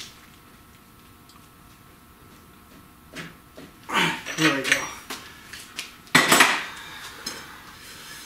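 Metal clanking of a long wrench and socket worked on a rear axle hub nut, with a loud, sharp clank about six seconds in.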